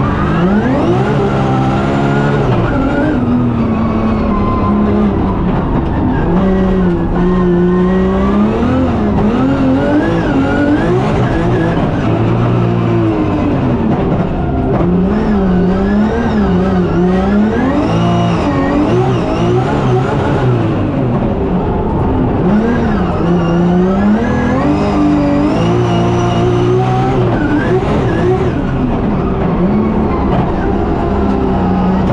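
900 bhp BMW M3 drift car at race pace, heard from inside the cabin: the engine's revs climb and drop over and over as it accelerates, shifts and slows through the corners.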